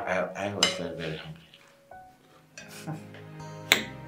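Metal cutlery clinking against plates during a meal, with one sharp, loud clink near the end, over background music.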